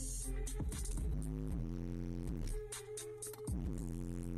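Bass-heavy electronic music played loud through a car-audio system with two Skar Audio subwoofers, heard inside the cabin, with sliding bass notes over a steady beat. The deepest bass drops out for under a second about two and a half seconds in, then returns.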